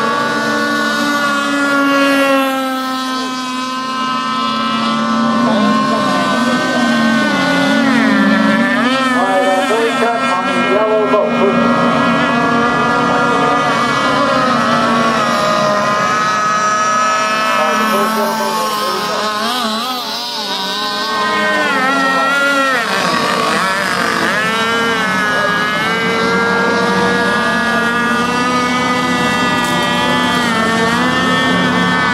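Radio-controlled rigger racing boat with a Quickdraw 25 engine running flat out, a steady high-pitched engine note whose pitch wavers up and down again and again as the boat rounds the course.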